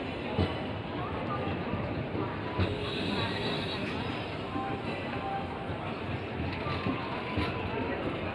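Indian Railways sleeper-class passenger coaches rolling past along a station platform. A steady wheel-on-rail rumble carries a few sharp knocks, the loudest about half a second in and two and a half seconds in.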